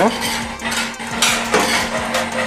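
Metal utensils clinking and scraping against stainless steel cookware as a spoon stirs apples in a saucepan and a whisk beats a thin batter in a metal bowl.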